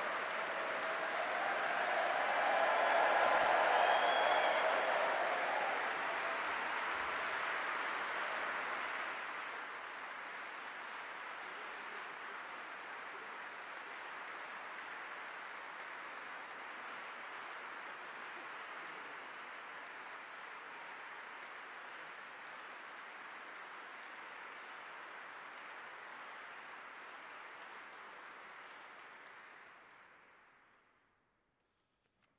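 Large audience applauding, loudest a few seconds in, then settling to steady clapping that fades away near the end.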